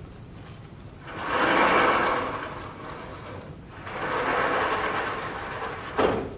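Lecture-hall whiteboard panels sliding along their tracks: two long rolling rumbles, each about two seconds, then a sharp knock near the end as a panel stops.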